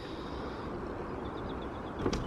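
Steady outdoor background noise, a low even rumble with nothing sudden in it.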